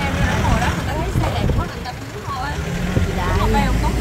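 People talking over the steady low rumble and road noise of a slow-moving vehicle.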